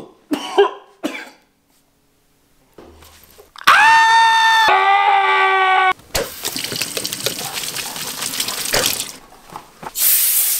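A loud held pitched tone in two steps, higher then lower, lasting about two seconds, then water running from a kitchen faucet into a sink for about three seconds.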